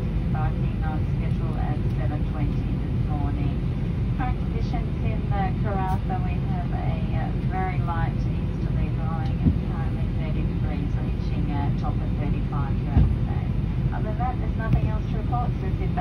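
Steady low drone inside a parked Airbus A320 cabin, with indistinct voices of passengers talking throughout and two light knocks in the second half.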